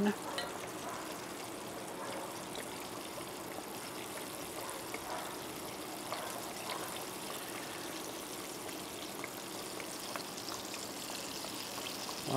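Fish fillets deep-frying in hot oil in a small cast iron Dutch oven: a steady sizzle with faint scattered pops.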